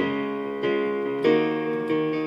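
Electronic keyboard played with a piano sound: sustained chords, a new one struck about every two-thirds of a second and left ringing.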